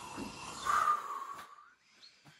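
A person's breathy exhale, loudest a little under a second in, then fading away.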